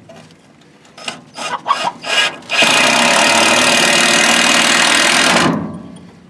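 Cordless drill driving a long screw into a pine 2x4. It gives a few short bursts, then runs steadily for about three seconds and stops abruptly.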